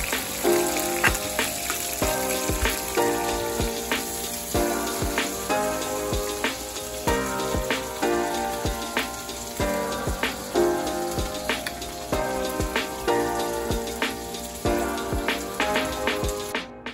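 Meatballs sizzling in butter in a cast-iron skillet, a steady frying hiss, under background music with chords and a steady beat.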